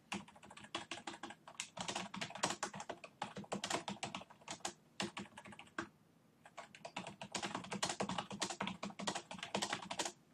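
Typing on a computer keyboard: a fast, irregular run of key clicks, with a brief pause a little past halfway.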